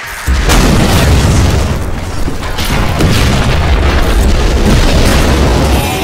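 Cartoon battle sound effects mixed with music: a loud, deep booming rumble that kicks in sharply just after the start, with several sharp impacts landing over it as a giant robot is hit.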